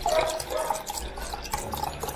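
Milk pouring from a carton into a clear plastic cup, an uneven stream of splashing and filling.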